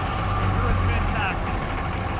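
Pickup truck engines idling with a steady low rumble. A faint voice is heard briefly about a second in.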